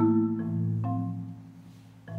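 Marimba played with yarn mallets: a few struck notes in the first second over ringing low bars, then the sound dies away, quiet before the next phrase.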